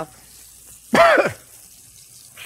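A man coughs once, briefly, about a second in, over the faint sizzle of pans frying on the stove.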